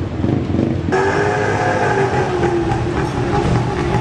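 Street traffic noise with a vehicle engine droning steadily, coming in suddenly about a second in, its pitch drifting slightly up and down.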